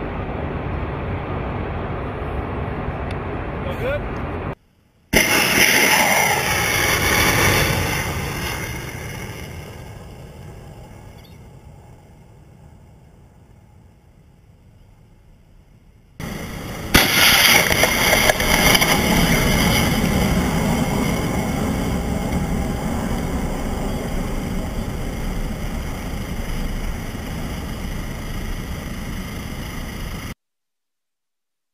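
Steady vehicle noise, then two THAAD interceptor missile launches: each a sudden loud rocket-motor roar, the first fading away over about ten seconds, the second starting about halfway through and slowly easing off.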